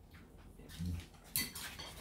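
Light clicks of chopsticks and tableware on a dining table, the sharpest about one and a half seconds in, followed by a few fainter ticks.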